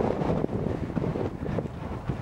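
Wind buffeting the microphone: an uneven, gusting low rumble.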